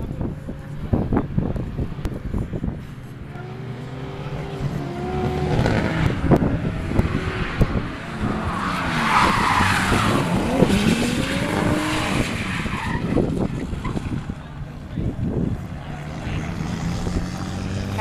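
A car sliding sideways on a wet race track, its engine revving up and down through the slide, with tyre noise. Loudest about halfway through as it passes.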